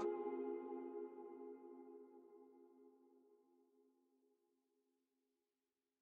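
Ending of a trap beat instrumental: the drums and high parts stop at once, leaving a held chord that fades out over about four and a half seconds.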